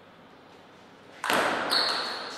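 Table tennis ball being struck by a racket and bouncing on the table. There are sharp, ringing hits starting just over a second in, after a quiet first second.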